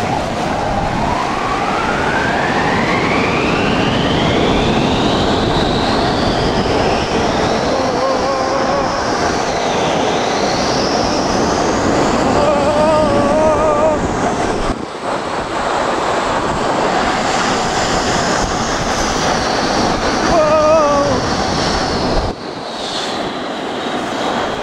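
Snow tube sliding fast down a packed-snow tubing lane: a loud, steady rushing of the tube scraping over snow and wind buffeting the microphone. The noise drops suddenly about two seconds before the end as the tube slows in the run-out.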